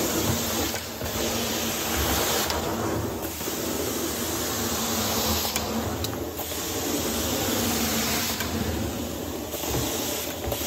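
Carpet extraction wand drawn across wet carpet: a steady rush of suction and spray hiss that swells and dips with each stroke, roughly every three seconds, over a steady low hum.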